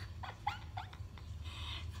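Dog giving a few short, high, squeaky whines that rise in pitch, over a low steady hum.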